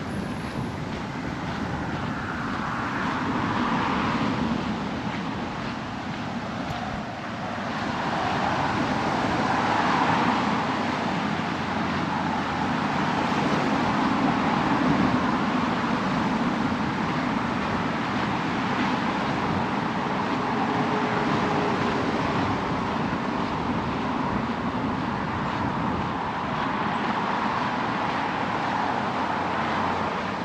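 Steady road-traffic noise from passing cars, a continuous rush that swells and eases several times.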